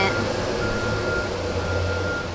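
Steady low rumble of an idling vehicle in the street, with a thin high whine that holds steady and cuts out briefly twice.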